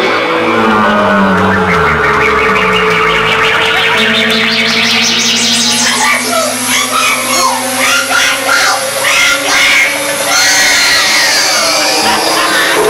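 Live space-rock band in a noisy instrumental passage: held drone notes under electronic effects. A pulsing sweep climbs steadily in pitch over the first few seconds, then gives way to warbling, chirping squiggles.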